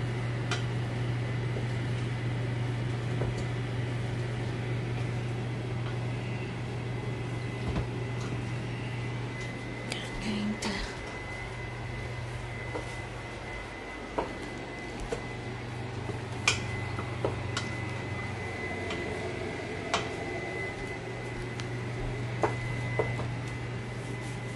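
Steady low hum of a kitchen appliance, with a faint thin high whine from about nine seconds in. Scattered light clinks and knocks of a utensil against a pot.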